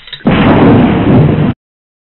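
Bomb explosion sound effect: a loud blast starting about a quarter second in and lasting just over a second, then cut off abruptly into silence.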